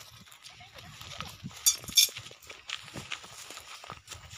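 Footsteps on dry ground: irregular soft knocks and scuffs, with two sharp clicks about two seconds in as the loudest sounds.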